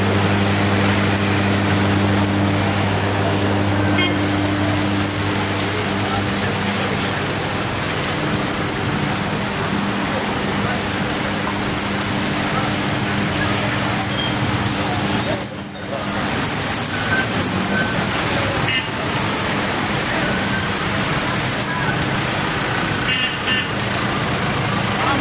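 Road traffic in heavy rain: a steady hiss of rain and tyres on wet asphalt, with a vehicle engine's low hum during the first several seconds.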